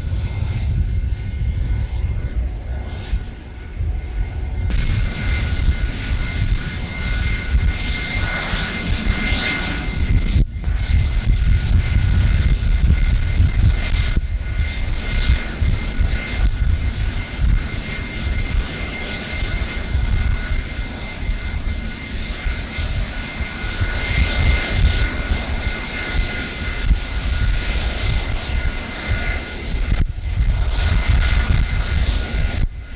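Jet engines of Air Force One, a Boeing 707 (VC-137C), at takeoff power as it rolls and climbs out: a loud steady roar with high whine tones that swells about five seconds in. Wind rumbles on the microphone.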